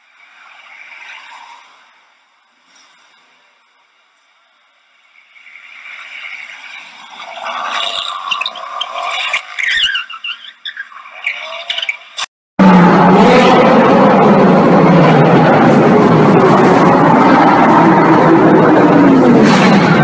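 A car on a street accelerates, its sound building over several seconds. After a sudden cut, a group of sports cars drive through a tunnel, their engines loud and revving up and down, echoing off the walls.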